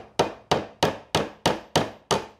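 Claw hammer tapping a small flat-headed nail into the softwood side bar of a beehive frame. It gives a run of quick, evenly spaced blows, about three a second, each ringing briefly.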